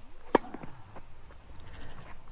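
A single sharp crack of a tennis racket striking a ball about a third of a second in, over a low outdoor background.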